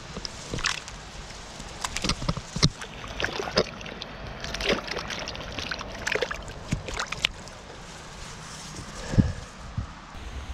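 A keepnet full of roach being tipped into the river: a run of sharp, irregular splashes as the fish slap into the shallow water, with water sloshing and dripping from the mesh. One louder thump near the end.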